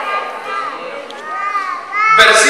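A child's high-pitched voice in a large hall, rising and falling in two short calls, about half a second in and again near the end.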